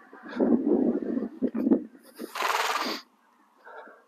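Young Connemara horse neighing in a broken series of calls over the first two seconds. A loud, rushing, hiss-like noise follows for just under a second.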